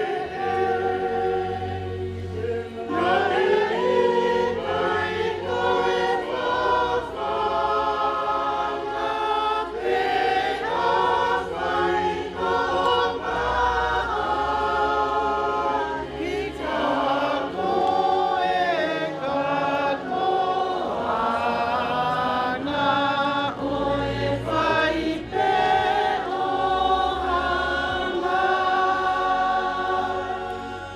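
A large group of standing guests singing together in parts, choir-style, holding long sung notes.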